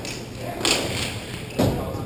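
Two thuds of play in an indoor hockey game, such as stick, ball and boards, echoing in a large hall. The second, about a second and a half in, is the louder and sharper.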